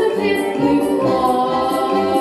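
A boy singing a song into a microphone over a backing track with a steady beat and choir-like voices.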